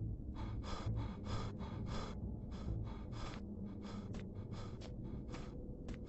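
A person panting hard and fast, about three short breaths a second.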